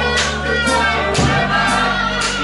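Live rock band playing: a woman singing over electric guitar, electric bass and drums, with a drum and cymbal beat about twice a second.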